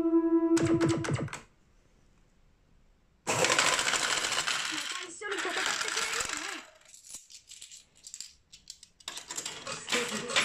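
Pachislot machine: a held electronic tone cuts off about a second in. From about three seconds in comes a loud, dense clatter of metal medals dropping into the machine's tray for about three seconds, followed by scattered clicks.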